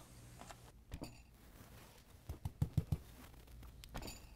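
Soft taps of an oil-paint brush dabbing onto a stretched canvas, one about a second in and a quick run of several between two and three seconds in, over a faint low hum.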